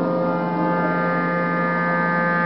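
Clarinet holding one long, steady low note, with no change in pitch, like a drone.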